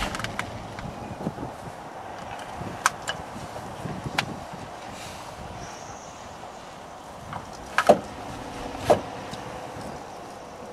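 A car seatbelt being handled in a back seat: the webbing slides and rustles, and there are several sharp clicks and knocks from the belt hardware, the two loudest near the end, over steady car-cabin noise.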